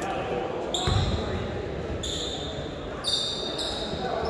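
Basketball sneakers squeaking on a hardwood gym floor: three short, high squeaks, with a basketball thudding on the floor about a second in. Voices carry through the hall underneath.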